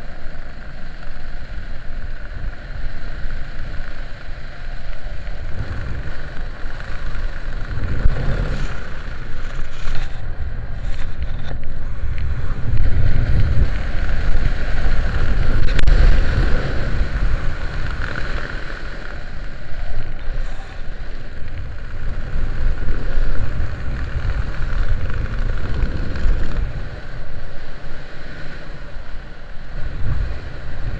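Wind buffeting the microphone of a skydiver's camera during descent under an open parachute: a loud, low rushing that swells and fades in gusts, strongest about halfway through.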